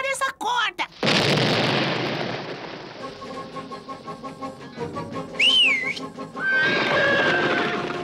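Cartoon sound effects over background music. A loud rushing noise starts suddenly about a second in and fades away, a short wavy whistle sounds a little past the middle, and a held whistle-like tone comes near the end.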